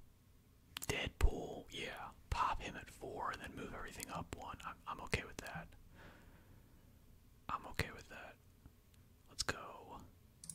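A man whispering close to the microphone in short phrases, too soft for the words to come through, with a few sharp clicks among them.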